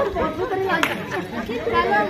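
Several women's voices chatting over one another, with a brief sharp click a little under a second in.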